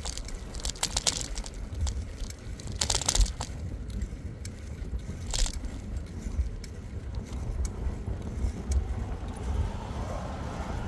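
Riding along a paved trail, most likely a bicycle: a steady low rumble of wind and tyre noise on the microphone, with brief rattles about one, three and five and a half seconds in.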